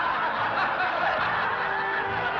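An audience laughing, many people chuckling and laughing at once.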